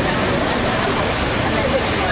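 Water jets of the Magic Fountain of Montjuïc, a large display fountain, making a steady rush of falling spray, with no music playing. Voices of a crowd talk over it.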